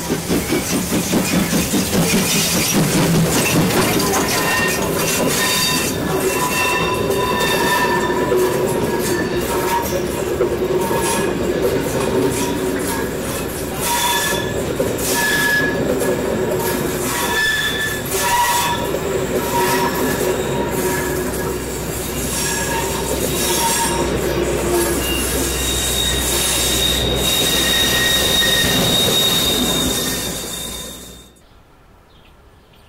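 Steam-hauled passenger train passing close by: the DB class 64 tank locomotive's rapid exhaust beats at first, then the coaches rolling past with wheels squealing shrilly on the curve and clicking over the rail joints.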